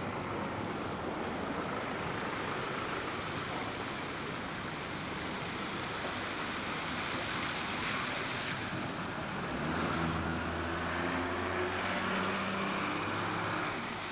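Outdoor traffic rumble with wind buffeting the microphone; from about nine and a half seconds in, the low steady drone of a single-deck bus's diesel engine passing close by.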